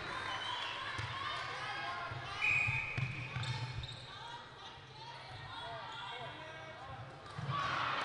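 Netball match ambience in a large indoor sports hall: faint overlapping voices of players and spectators, with the ball and the players' feet on the wooden court floor. A brief high tone comes about two and a half seconds in.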